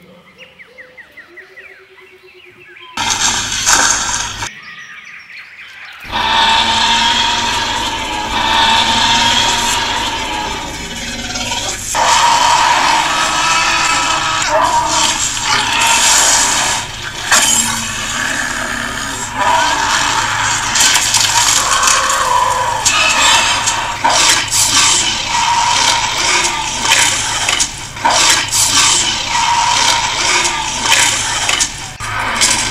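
Dubbed-in monster roar and growl sound effects for toy dinosaurs fighting, over background music: a short loud burst a few seconds in, then loud and unbroken from about six seconds on.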